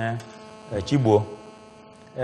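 Steady electrical mains hum, heard under two short snatches of a man's voice, one at the start and one about a second in.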